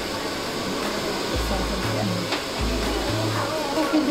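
A hair dryer running with a steady rushing of air, under background music with deep, sustained bass notes.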